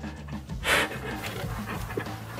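A man laughing under his breath: breathy exhaled laughter with no words, loudest in one short puff just under a second in.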